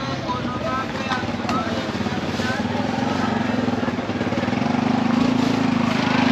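Motorcycle engine running steadily and growing louder over the last few seconds, with voices in the background.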